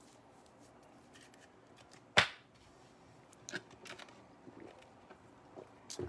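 Trading cards being handled on a table: one sharp click about two seconds in, then faint, scattered rustling and light ticks of cards and plastic card holders.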